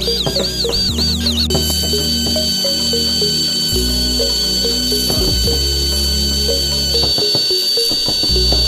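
Background electronic music with a steady bass line and a quick repeating melody, with a high steady tone held through most of it.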